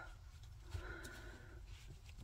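Very quiet room tone, with a faint, brief soft sound about a second in.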